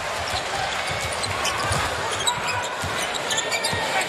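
Basketball being dribbled on a hardwood court, repeated low bounces over the arena crowd's steady noise, with short high sneaker squeaks.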